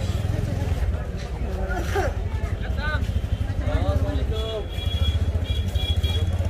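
Low, rapidly pulsing engine running close by, under scattered voices of a market crowd. A short high steady tone sounds in the last couple of seconds.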